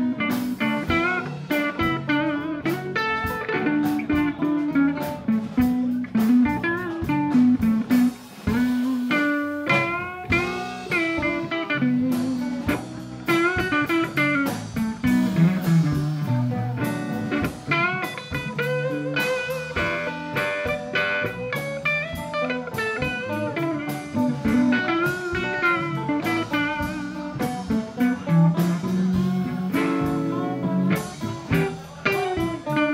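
Live blues band playing an instrumental passage: guitars, bass guitar and drum kit, with a lead line of bent, wavering notes over the moving bass.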